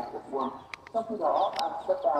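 Chickens clucking in short calls, with a few sharp clicks.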